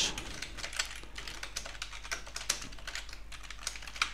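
Typing on a computer keyboard: a quick, uneven run of keystroke clicks.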